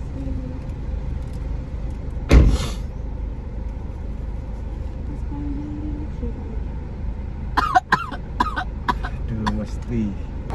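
A woman's short high-pitched whimpers and squeaks near the end, while a nasal swab is pushed into her nose, over the low steady rumble of a car cabin. One sudden loud burst of noise sounds about two seconds in.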